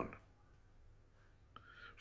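Near silence in a pause between a man's words. Near the end comes a faint intake of breath before he speaks again.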